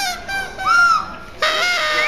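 Whistles blown as sound effects: a pitched tone that bends up and back down about halfway in, then a steadier, lower tone near the end.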